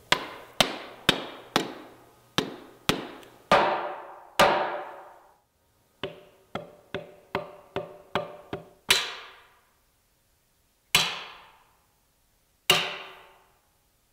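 Hard knocks seating a titanium throwing-axe head onto its wooden handle, each with a short metallic ring: about eight heavy knocks, a pause of under a second, a quicker run of lighter knocks, then three single heavy knocks spread over the last few seconds.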